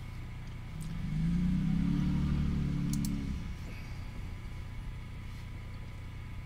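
A low rumble that swells about a second in and fades away a couple of seconds later, over a steady background hum, with a couple of faint clicks near its end.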